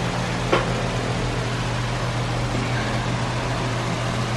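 Steady background hum and hiss of an indoor room, with one short click about half a second in.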